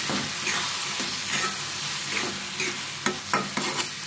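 Tomato bhaji sizzling as it fries in a pan, stirred and scraped with a metal spatula. A few sharper scrapes of the spatula on the pan come near the end.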